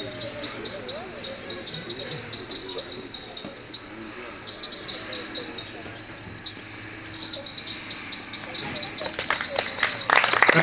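Crickets chirping in a steady high tone under faint murmuring voices; scattered hand claps start near the end.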